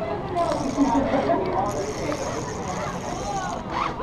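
Rappel rope running fast through a self-braking descender, a steady rasping hiss as the rappeller slides down, with faint voices behind it.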